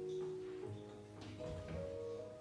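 Electric keyboard playing a slow passage of held notes, a new note sounding every half second or so.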